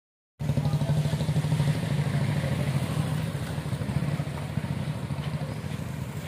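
Motorcycle engine running close by, a steady low throb that eases slightly near the end.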